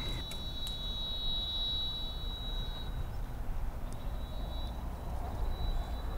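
Outdoor ambience: a steady low rumble, with a faint thin high tone that fades out about halfway through and returns near the end.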